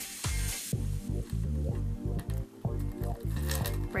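Background music with a steady, repeating bass beat.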